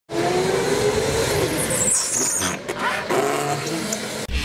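Drift go-kart driving on a polished concrete track, its motor rising in pitch, with a brief high squeal of the tyres a little under two seconds in.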